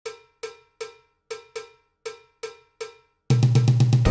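Intro music: about eight sharp, cowbell-like metallic percussion hits in an uneven rhythm, each ringing briefly. Near the end, full music with heavy bass comes in all at once.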